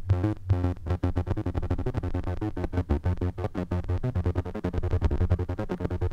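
Behringer Neutron analog synthesizer playing a low repeating sequence, its filter cutoff pulsed by a square-wave LFO from an iPad app. About a second in, the LFO rate is turned up, and the filter pulsing becomes a fast, even chop.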